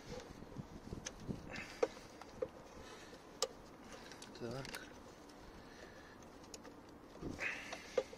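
A few light, sharp plastic clicks as wiring-harness connectors are unplugged from a car's engine control unit, with faint voices in the background.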